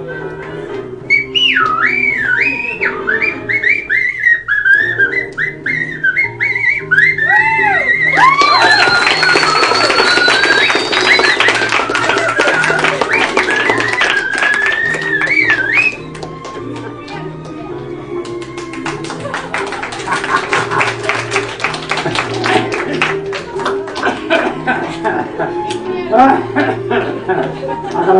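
A man whistling a melody into a microphone with warbling trills and glides, over backing music with a steady beat. From about a third of the way in, quick even claps join, and they carry on with the music after the whistling stops a little past halfway.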